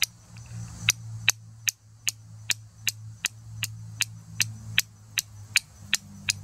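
Steel fire striker hitting a flint shard in glancing blows, a sharp click about two to three times a second, striking sparks onto char cloth held on the flint.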